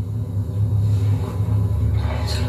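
A steady low drone from the television's soundtrack, with little above it in pitch, heard through the TV speaker.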